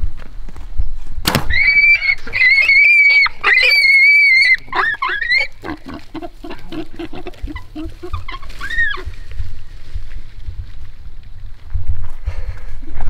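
A sharp crack about a second in, then a wild hog squealing loudly in a string of high-pitched squeals for several seconds, followed by a run of lower, rapid grunts and one last squeal.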